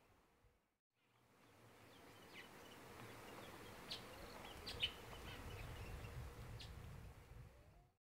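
Faint outdoor background with a few short, high bird chirps scattered through it, after about a second of silence at the start.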